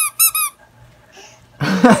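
Squeaker in a purple lake-monster toy being squeezed: a quick run of high, identical squeaks in the first half second. A woman starts talking near the end.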